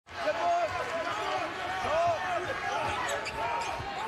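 Game sound from a basketball court: a ball being dribbled on the hardwood in repeated low thumps, with many short high squeaks from players' sneakers.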